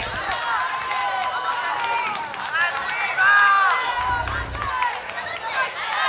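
Several people calling and shouting over one another, with one louder shout about three seconds in and scattered sharp knocks.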